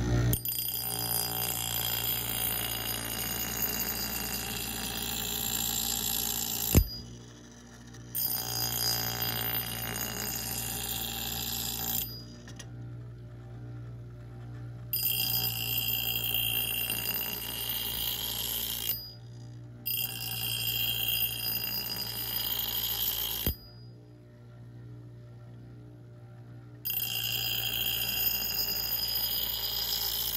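Bench grinder running with a steady motor hum while the steel edge of a Cold Steel Competition Thrower axe head is pressed to the wheel in five passes of a few seconds each. Each pass gives a high-pitched, ringing grind, with only the motor hum in the gaps between passes. The axe's worn, grooved edge is being ground clean and resharpened.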